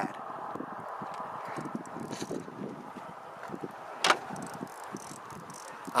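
Faint steady outdoor background noise, with one sharp click about four seconds in.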